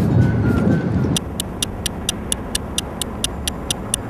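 Background music ends about a second in and gives way to rapid, even clock-like ticking, about five ticks a second, a time-passing sound effect, over a low steady rumble.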